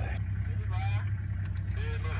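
Open game-drive vehicle's engine idling, a steady low hum.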